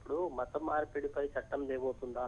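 A caller's voice speaking continuously over a telephone line into the broadcast, thin-sounding with the highs cut off.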